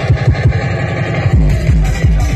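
Loud, fast tekno played over a free-party sound system, driven by a rapid, evenly repeating kick drum. The deepest bass drops out at the start and comes back about one and a half seconds in.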